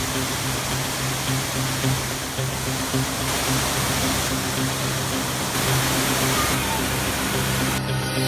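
Steady rush of water from a waterfall pouring over a rock ledge, with music and a steady low note underneath.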